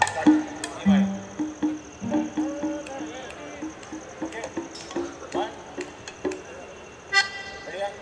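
Piano accordion sounding short, separate notes, with a loud full reedy chord near the end.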